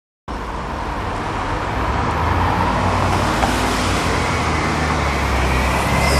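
Diesel engine of a double-decker bus running in street traffic, a steady low rumble over road noise that cuts in suddenly just after the start and grows gradually louder as the bus draws near.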